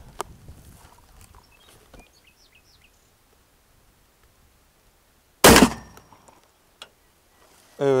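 A single shotgun shot, a sabot slug fired through a rifled choke, about five and a half seconds in: one sharp, loud report with a short fading tail.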